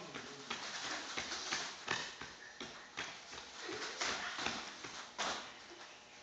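Children's bare feet thudding and shuffling on foam martial-arts mats as they dodge sideways: irregular soft thumps, tailing off near the end.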